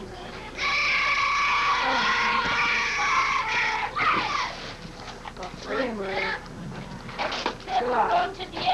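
Young players' voices cheering: one long, high shout held for about three seconds from about half a second in, then shorter calls and chatter.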